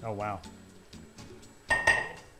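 A single sharp clink of kitchenware near the end, ringing briefly, as hard dishware is knocked together.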